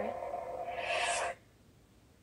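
LGT Ravenbreaker lightsaber's sound board humming steadily, then playing its power-down sound and cutting off abruptly a little over a second in as the blade switches off.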